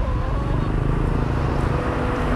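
Steady low rumble of city bus engines and street traffic close by.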